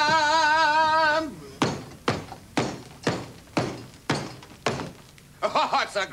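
A man's sung note, held with a wobble, ends about a second in. It is followed by a run of about seven thuds, evenly spaced at about two a second, which die away before talk resumes.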